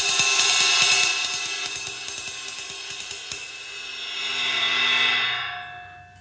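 Drumstick tapping a fast, intricate pattern on a Paiste ride cymbal, played with a thumbs-up (French) grip. The strokes stop about three seconds in and the cymbal rings on, dying away near the end as a hand grabs its edge.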